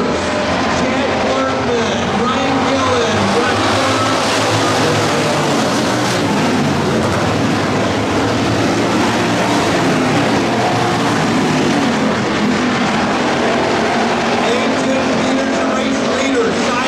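Several hobby stock race cars' engines running hard around a dirt oval, their pitch rising and falling as they go through the turns.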